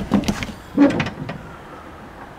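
Van door being opened: latch and handle clicks, with a short pitched sound, the loudest moment, just under a second in as the door swings open.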